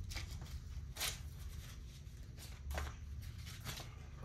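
Paper dollar bills and clear plastic sleeves rustling in short bursts as cash is handled, about five times, the loudest about a second in, over a steady low rumble.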